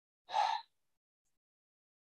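A man's short, sharp breath into the microphone, under half a second long, about a third of a second in.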